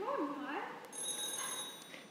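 Telephone ringing, starting about a second in, its ring made of several steady high tones together.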